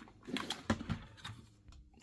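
A few faint knocks and clicks from the plastic body of a Dyson V7 stick vacuum being handled and set down on a workbench, the loudest about two-thirds of a second in.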